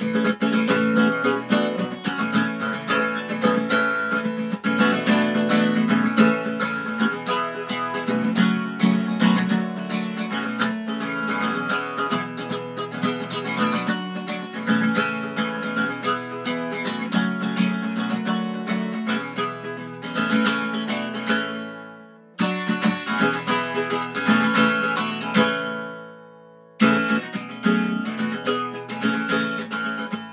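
Acoustic guitar picked note by note through simple warm-up tab patterns. Twice in the second half the playing stops and the last notes ring out and fade away before she picks up again.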